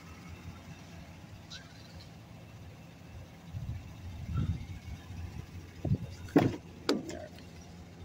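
Low steady hum of a running Chevrolet Express van, with a brief low rumble midway. Near the end come a few sharp clicks and knocks as the driver's door is opened.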